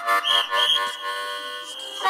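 Harmonica playing a train imitation. The fast chugging rhythm breaks off and a long, held high chord wails like a train whistle, wavering twice before holding steady.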